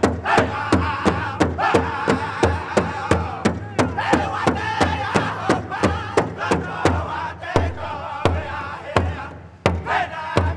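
Powwow drum group: a large drum struck in a steady beat, about two and a half strokes a second, with a chorus of high-pitched singers chanting over it. Drum and song break off briefly near the end, then start again.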